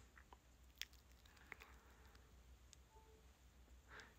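Near silence: room tone, with a few faint, short clicks.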